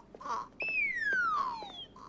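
Cartoon sound effect: a descending whistle that slides steadily down in pitch for just over a second, as a character keels over dazed.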